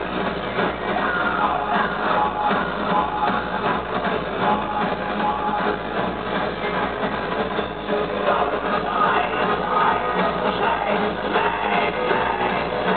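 Live electro-industrial (aggrotech) music played loud through a concert PA. It is dense and steady, with no break.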